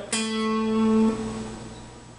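A single guitar note, A on the seventh fret of the D string, plucked once and left to ring as it fades away over about a second and a half.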